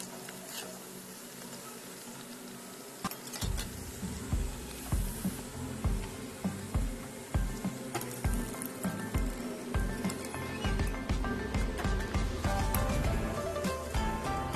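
Background music with steady tones, joined about three seconds in by a regular bass beat, over the faint sizzle of batter-coated egg biscuits deep-frying in hot oil.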